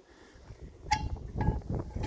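Handling noise of a homemade PVC-pipe speargun: a sharp knock about a second in, followed by a second of rubbing and shuffling.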